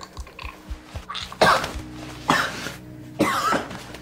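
Three loud, strained coughing grunts about a second apart from a man held in a headlock during a struggle, over tense background music with a low pulsing beat.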